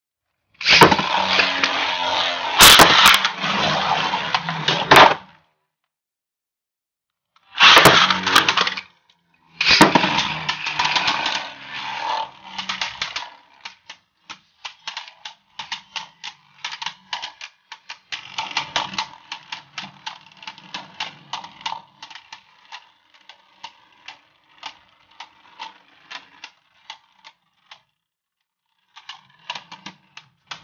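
Two Beyblade Burst tops spinning and colliding in a plastic Zero-G stadium. First comes a loud scraping rattle with sharp collision cracks, in three spells. It then gives way to a long run of fast, light clicking taps that thins out as the tops slow, with a short clatter near the end.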